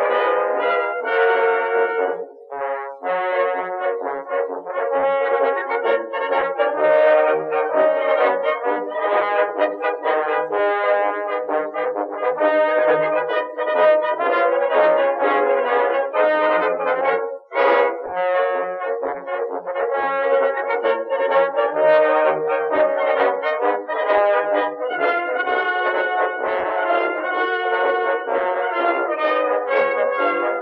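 Background brass music: brass instruments playing a melody, with short breaks a couple of seconds in and again just past halfway.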